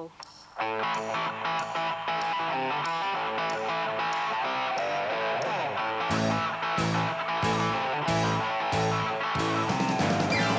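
A rock band playing an example built on a repeating electric guitar riff, used as the central riff of a song. About six seconds in, a heavier low end of bass and drums comes in under the riff.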